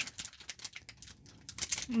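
Foil wrapper of a trading-card pack crinkling and crackling in the hands as it is gripped and pulled at to open it: an irregular run of small, sharp crackles.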